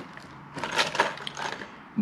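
Clear plastic packaging of a fishing lure handled in the hands: a run of light clicks and crackles of the plastic.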